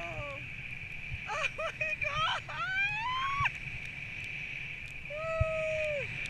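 Excited, high-pitched cries and whoops from a tandem paraglider passenger at takeoff: a run of rising cries in the middle and one long held cry near the end, over wind rumbling on the microphone.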